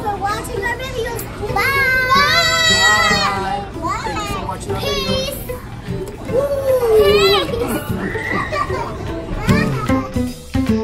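Young children's high voices calling out and squealing, with music playing underneath.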